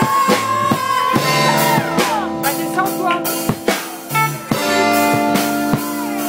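Live rock band playing: an electric guitar holds a long note that bends, then slides down, over drums keeping a steady beat.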